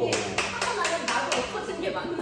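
Hand clapping, about four claps a second, dying away about a second and a half in, with voices under it.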